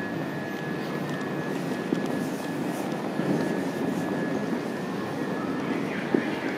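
Steady noise of an underground railway platform with an electric passenger train standing at it, a thin steady high whine running over the low hum.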